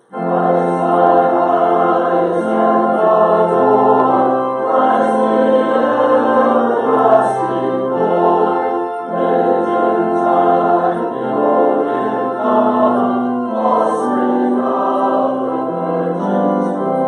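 Choir and congregation singing a hymn with organ accompaniment, held notes moving in chords; a brief break right at the start between phrases.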